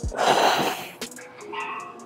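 A woman's forceful exhale, under a second long and near the start, as she works through a rep on a rear delt fly machine.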